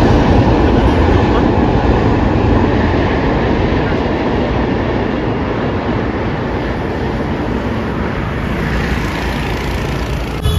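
A train running on the rails, a loud, steady rumble that starts suddenly and slowly fades.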